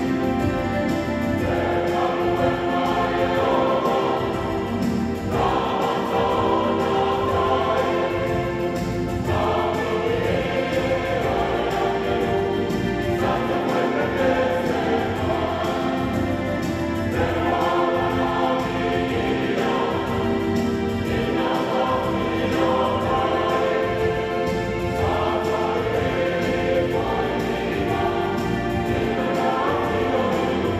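A mixed church choir of men and women singing a hymn in parts, in long held chords that change about every four seconds.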